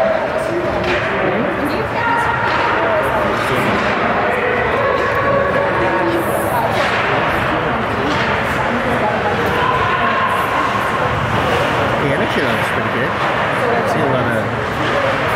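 Ice hockey rink sound: indistinct voices of players and spectators calling and shouting in the echoing arena, with a couple of sharp knocks from play on the ice.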